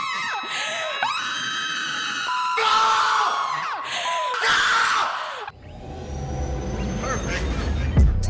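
Women screaming and shrieking in quick cut-together clips, interrupted twice by a short steady beep. About five and a half seconds in the screaming cuts off, and a low, swelling music intro builds.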